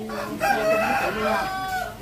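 A rooster crowing once: one long, held call lasting about a second and a half that ends abruptly just before the end.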